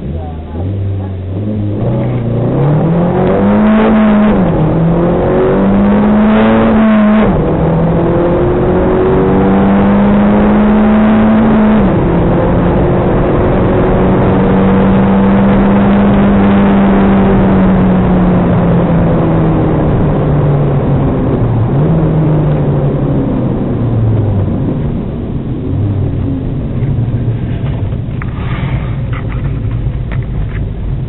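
Audi S3's turbocharged four-cylinder engine at full throttle from a standing start, the revs climbing steeply and dropping sharply at three upshifts, about 4, 7 and 12 seconds in. It then holds high revs for several seconds before the revs fall away near the end as the car slows, heard from inside the cabin.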